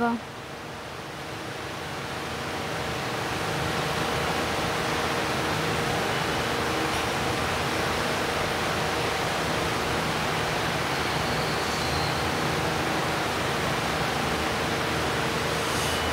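Steady rushing room noise with a faint hum, swelling over the first few seconds and then holding level.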